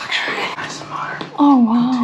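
Breathy whispering and hard breathing from someone out of breath after hauling luggage, then a drawn-out voiced sound with a wavering pitch near the end.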